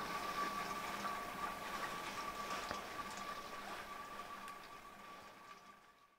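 Faint background noise with a steady, machine-like hum, fading out gradually toward the end.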